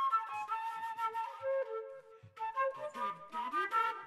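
Background music: a flute melody moving note to note, with a brief break about two seconds in.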